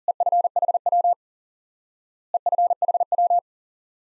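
Morse code at 40 words per minute: a single steady beeping tone keying the abbreviation EFHW (end-fed half-wave) twice, each sending lasting about a second, with a silent gap of over a second between them.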